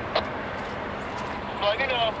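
Freight train tank cars rolling past over a steel girder bridge: a steady rolling noise with one sharp click a little after the start.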